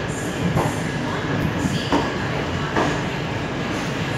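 Passenger train rolling slowly out of a station, heard from an open coach door: a steady rumble of wheels on rails broken by a few knocks as the wheels cross rail joints.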